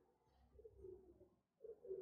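Near silence, with faint low bird cooing in two short phrases, the first about half a second in and the second near the end.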